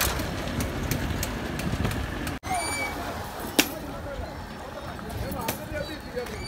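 Outdoor street ambience with wind rumbling on the microphone, distant voices and scattered clicks and knocks, including one sharp knock about halfway through.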